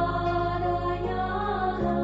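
Slow, calm background music of sustained, chant-like tones, with a change of chord near the end.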